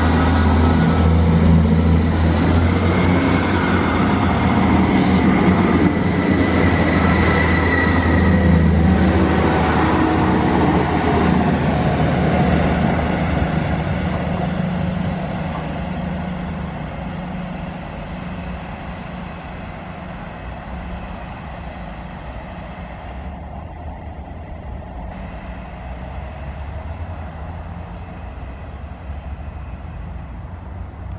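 Diesel multiple unit passing close, with engine rumble and wheel-on-rail noise and a thin high whine over the first several seconds. The noise fades away after about twelve seconds and is followed by the quieter, steady running of a Class 158 diesel unit approaching in the distance.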